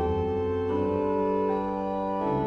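Frobenius pipe organ playing sustained chords over a deep pedal bass, the harmony moving to new notes a couple of times.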